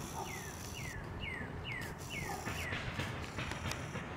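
A bird singing a run of about six short whistled notes, each sliding downward, about two a second, then stopping near the three-second mark. Faint background noise with a few soft clicks runs underneath.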